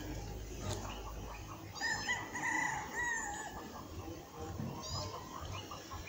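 A rooster crowing once, about two seconds in and lasting about a second and a half, with a short high chirp a few seconds later.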